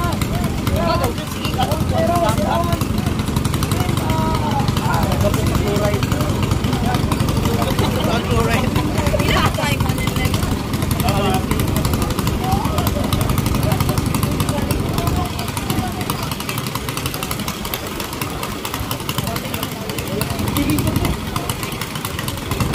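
Small 7 hp racing-boat engines running steadily at idle, a continuous low drone with a rapid fine pulse, while the boats are held in the water before the start. Crowd voices over it.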